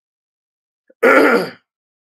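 A man clearing his throat once: a short, rough burst about a second in.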